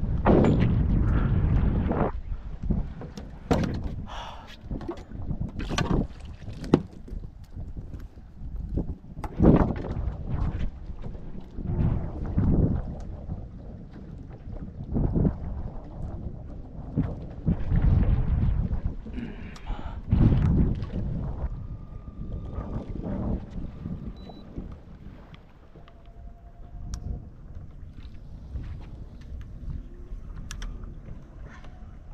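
Wind buffeting the microphone in gusts, over irregular knocks, bumps and handling noises on a small boat's deck.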